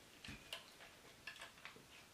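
A few faint, scattered clicks from the plastic parts and joints of a Jinbao oversized Nero Rex Talon transforming figure being handled and moved, over near silence.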